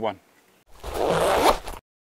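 A zipper being pulled once, a loud rasp lasting about a second that cuts off suddenly into silence.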